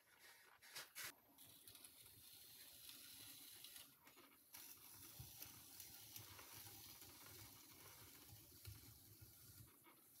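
Faint, steady scraping hiss of a kidney rib smoothing the leather-hard clay surface of a jar turning on a pottery wheel. A few soft knocks come about a second in, as the hands settle on the pot.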